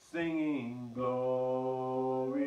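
A man singing a slow hymn unaccompanied, his voice sliding between notes early on and then holding one long note through the second half.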